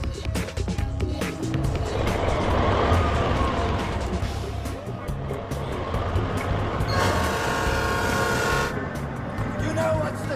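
Film soundtrack mix of background music and vehicle noise, with a rising and falling engine-like sweep a couple of seconds in. About seven seconds in comes a held tone with many even overtones, lasting under two seconds.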